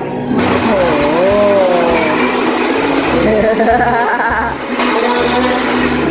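Handheld hair dryer blowing steadily, a constant rush of air over a motor hum, switched on about half a second in, used to blow cut hair off after a haircut.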